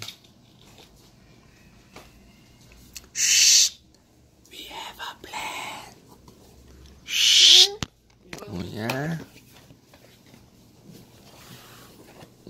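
Two drawn-out 'shh' hushing sounds, about three and seven seconds in, with soft whispery breath sounds between them and a short rising voice sound near nine seconds.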